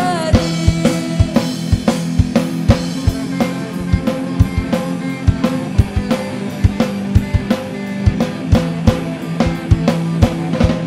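Live amateur rock band playing an instrumental passage: a drum kit keeps a steady beat on kick and snare while electric guitars hold sustained chords, with no singing.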